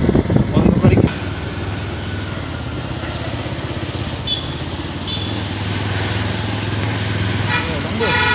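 Motorcycle engine running steadily on the move through town traffic, after a loud rumble on the microphone in the first second. A vehicle horn starts sounding at the very end.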